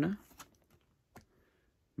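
Trading cards being handled and slid from the back of a small hand-held stack to the front, giving a few light clicks and taps of card edges, about half a second and a second in.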